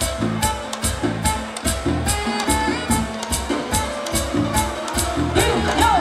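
Live dance band playing through a PA, with a steady drum beat, a pulsing bass line and held instrumental notes.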